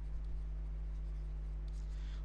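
Light scratching of a stylus writing on a pen tablet, faint under a steady low hum.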